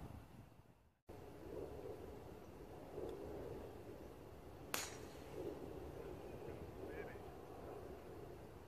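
A golf club striking the ball on a tee shot: one sharp crack a little past halfway through, over a steady low outdoor background.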